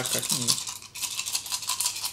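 Small board-game tokens rattling and clicking against each other as they are shaken in a small bag to be mixed for a random draw.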